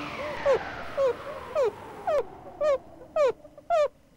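A series of short, high squeaks that fall in pitch, about two a second and evenly spaced, as the music tails off at the start.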